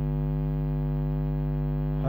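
Steady electrical mains hum with a stack of overtones, unchanging throughout.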